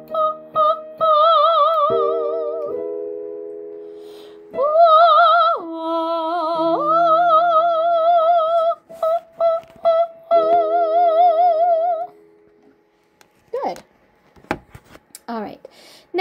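A woman sings a vocal warm-up on the vowel 'oh' with vibrato over held accompanying chords. The line steps through the notes, drops an octave and climbs back, then gives a run of short repeated notes and a long held note. The singing stops about three-quarters of the way through, leaving only faint sounds near the end.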